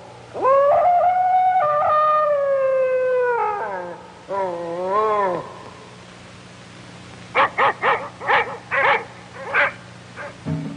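A dog howling: one long howl that sinks slowly in pitch, then a shorter wavering howl, then a quick run of about seven short, sharp yelps.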